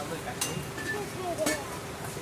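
Indistinct chatter of distant voices, with two sharp clicks, about half a second in and about a second and a half in.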